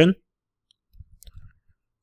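A few soft, faint computer-keyboard keystrokes, a short run of taps about a second in as a word is typed.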